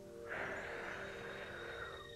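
A woman blowing a long, hard breath of air through cupped hands, a rushing hiss lasting about a second and a half, over soft background music with held notes.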